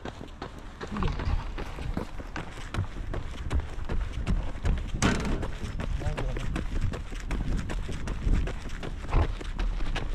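Running footsteps of two runners on an asphalt path: shoes striking in a quick, steady rhythm, several strikes a second. Low wind rumble sits on the moving camera's microphone.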